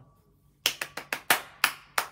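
Hand claps beating out a rhythm: four quick claps about half a second in, then slower, evenly spaced claps.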